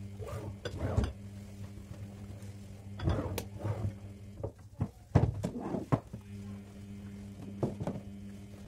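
Dishes and glassware clinking and knocking as they are handled and set down on a table, a handful of sharp knocks, the loudest about five seconds in, over a steady low hum.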